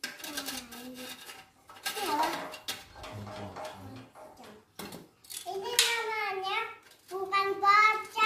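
A young child's high voice, talking and then drawing out long sing-song notes over the last few seconds. A few sharp knocks come in the first half.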